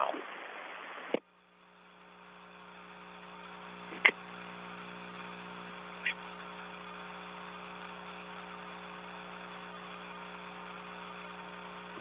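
Open communications line with no voice during reacquisition after a relay-satellite handover: a hiss that cuts off with a click about a second in, then a steady electrical hum with several tones that fades up. Two short clicks break the hum, around the middle.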